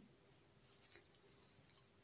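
Near silence: room tone with a faint steady high-pitched hiss.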